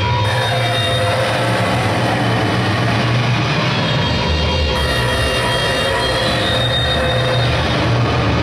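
Live analog synthesizer noise: a Doepfer A-100 modular synth through spring reverb with Moog FreqBox and other effects in a mixer feedback loop, making a dense, steady wall of noise over a low drone. Several thin high tones sit on top, one of them gliding upward a little past the middle.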